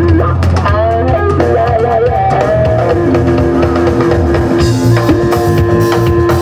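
Live rock band: electric guitar soloing with bending, wavering notes over a drum kit, going into a long held note about halfway through as the cymbals grow louder.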